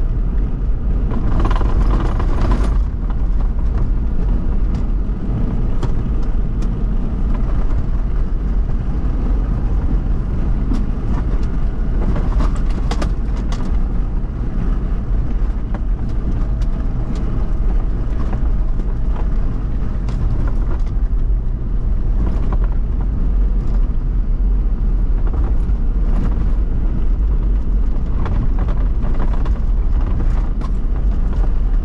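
Toyota VX 4x4 driving off-road over sandy desert tracks: a steady low rumble of engine and tyres, broken by frequent short knocks and rattles.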